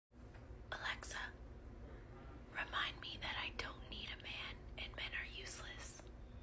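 A woman whispering several short phrases close to the microphone, over a faint low room hum.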